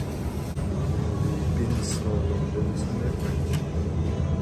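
Supermarket produce-aisle ambience: a steady low rumble with indistinct background voices.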